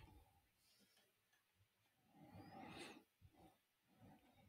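Near silence: faint room tone, with one faint, brief noise a little past halfway.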